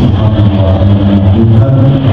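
An elderly man's voice intoning in drawn-out, sung tones into a handheld microphone, heard loud and boomy through the sound system.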